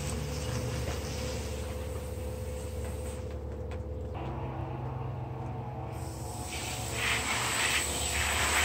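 Garden hose spray nozzle hissing as it sprays water, cutting out for about three seconds midway and then starting again.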